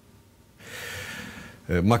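A man's audible breath, lasting about a second, after a brief near-silent pause.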